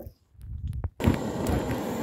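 Butane blow torch on a gas canister: a few clicks, then about halfway through it comes on with a sudden, steady hiss of gas and flame.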